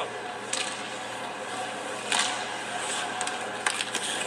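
Ice hockey game sounds heard through a TV speaker: a steady hiss of rink noise with a few short clacks and scrapes from skates, sticks and puck, the loudest about two seconds in.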